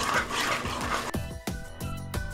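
Wire whisk beating flour into a thick batter in a plastic bowl, a quick scraping stir. About a second in, background music with a steady beat comes in and carries on.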